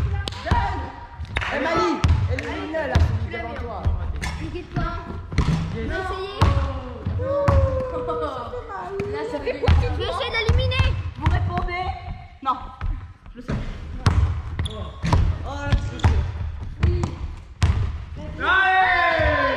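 Several basketballs bouncing irregularly on a wooden gym floor, with children's voices chattering and calling out over them.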